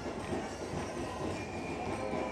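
Steady street-parade din of crowd and outdoor noise, with music for the dancers playing faintly underneath and a few held notes showing through.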